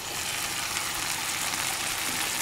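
Chicken pieces frying in oil in a pan with sliced onions and bell peppers, giving a steady sizzle.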